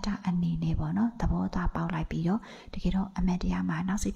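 Speech only: a woman talking steadily in Burmese, giving a Buddhist Dhamma talk, with short pauses between phrases.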